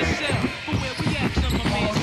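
Music with a heavy bass beat and a singing voice, mixed with a basketball bouncing on a hardwood gym floor.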